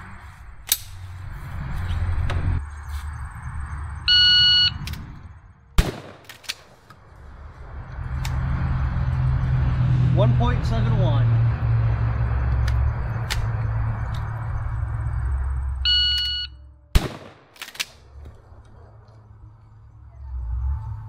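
An electronic shot timer beeps, and a moment later a 12-gauge shotgun fires once. Near the end the timer beeps again and the shotgun fires about a second after it, with a steady low rushing noise between the two runs.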